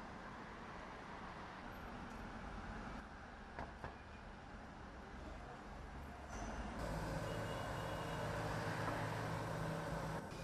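Outdoor street noise with a steady vehicle rumble. About two-thirds of the way through it gets louder and a low steady engine hum comes in.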